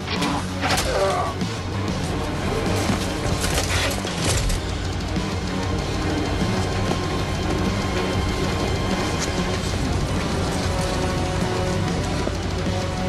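Film soundtrack music over battle sound effects, with several sharp crashes and impacts in the first four or five seconds, then the music running on steadily.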